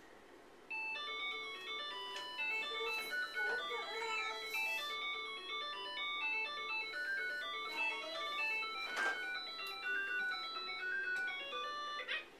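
A battery-powered children's toy playing an electronic tune of simple beeping notes, starting about a second in and going on steadily. A single sharp click comes about nine seconds in.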